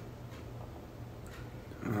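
Quiet room tone with a steady low hum, then a man's hesitant "um" near the end.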